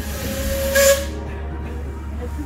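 Steam locomotive hissing steam, with a short, louder burst of steam just under a second in, over the low rumble of the moving train.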